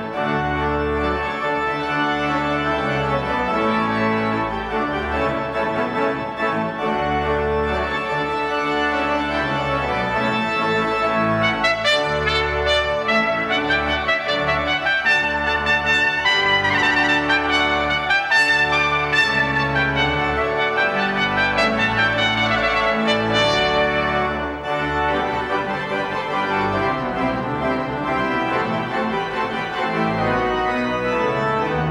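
Piccolo trumpet and a 96-rank Ruffatti pipe organ playing together, the trumpet carrying a bright melody over sustained organ chords and bass. The music dips briefly near the end, and the organ carries on.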